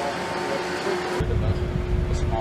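Steady outdoor hum with a faint constant tone and scattered faint voices; a little over a second in it cuts abruptly to wind buffeting the microphone, a strong, fluttering low rumble.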